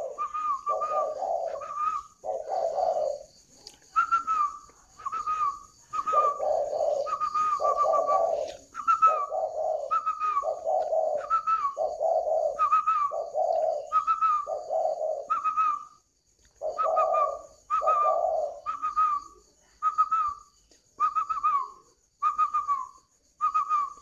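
Spotted doves cooing: a low coo repeated about once a second, dropping out a few times, alongside a steady run of short, higher whistle-like notes.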